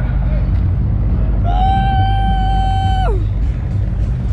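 A person's voice holds one long high cry of about a second and a half, starting about a second and a half in and trailing off with a falling pitch, over a steady low rumble.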